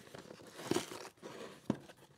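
Cardboard shipping box and its paper packing being pulled open and rustled by hand, crinkling, with two sharp snaps, one partway through and one near the end.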